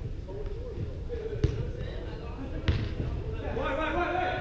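Two sharp thuds of a soccer ball being kicked on indoor turf, about a second and a quarter apart, with players calling out to each other.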